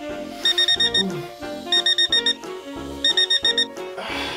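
Alarm clock beeping: three bursts of about five quick, high beeps each, over background music.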